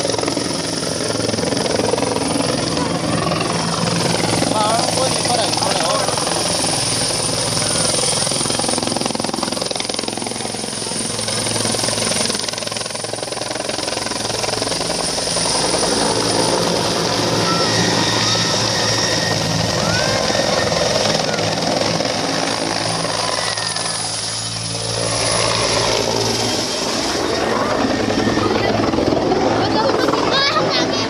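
Military utility helicopter flying low and fast along a runway, its rotor and turbine running steadily, the sound swelling and easing as it passes, with voices of onlookers around it.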